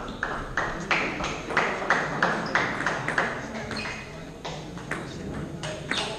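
Table tennis rally: the ball clicks off bats and table about three times a second for roughly three seconds, then a few scattered clicks follow once the rally ends.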